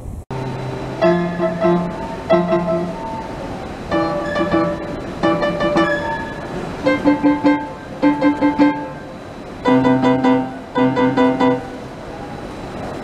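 Upright piano played with rhythmic repeated chords, struck in short groups of three or four with brief pauses between the groups.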